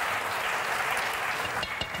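Studio audience applauding, the clapping dying away near the end.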